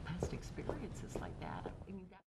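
Low, indistinct conversation among women at a table, too quiet to make out the words.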